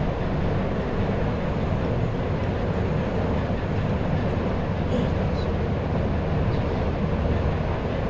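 Steady low rumbling background noise with no speech, broken only by a few faint ticks.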